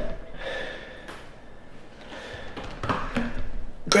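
A man breathing hard in gasps and exhales while straining through a set of back-exercise reps, with a few faint taps.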